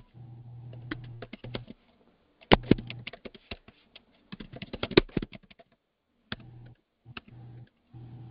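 Typing on a computer keyboard: runs of quick keystrokes with a few louder strikes, thinning to single key presses near the end.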